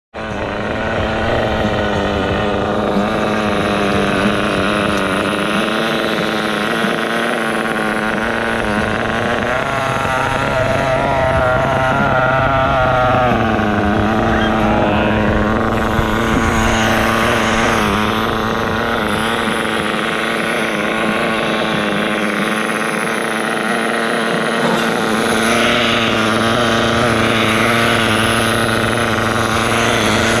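Nitro (glow-fuel) RC car engine idling steadily. It runs at one even pitch, with a brief wavering and slight rise in pitch partway through.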